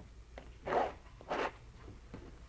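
Two short scrapes of a metal palette knife, about half a second apart.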